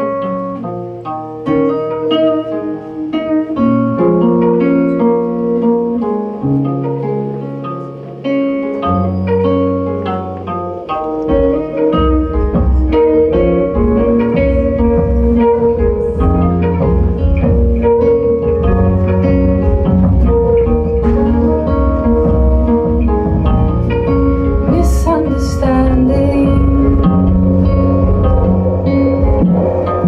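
Live rock band playing an instrumental passage: a hollow-body electric guitar picks notes over a few long-held low notes. After about eleven seconds the rest of the band comes in with a fuller, steady low end.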